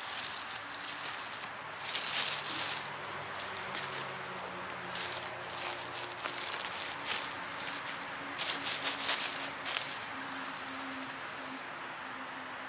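Dry leaf litter rustling and crackling as a hand clears leaves and works porcini mushrooms out of the forest floor. The sound comes in irregular bursts, loudest about two seconds in and again near nine seconds.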